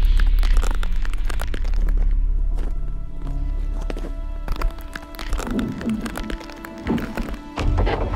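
Film soundtrack: a low rumble and sustained tones from the score, crossed by dense crackling clicks and a few heavier thuds. It grows quieter over the first half.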